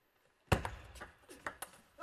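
Table tennis ball hits on paddle rubber and table: a sharp click about half a second in as the serve is struck, then a quick run of lighter clicks as the ball bounces and is played back and forth.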